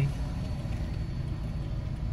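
Steady low rumble of a car idling while stopped, heard from inside the cabin.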